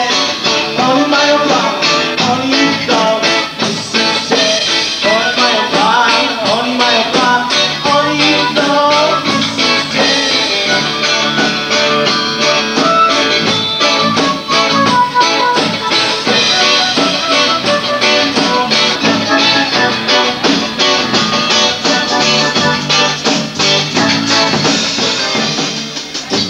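Rock band playing live: electric guitar over a steady drum kit beat.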